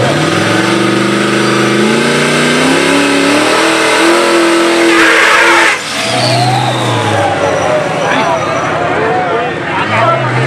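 Chevrolet Monte Carlo SS donk's engine revving hard as it launches down the drag strip, its note climbing in steps before holding high. About six seconds in, the sound changes to a lower, steadier engine note with crowd voices over it.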